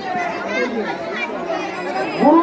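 People talking, several voices in overlapping chatter.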